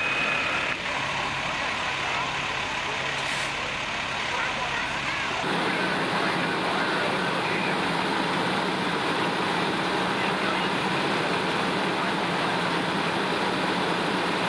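Fire apparatus diesel engines running steadily, with a brief hiss about three seconds in. The engine noise shifts abruptly about five seconds in.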